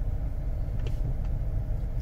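Steady low rumble of background room noise in an interview room, with no clear events in it.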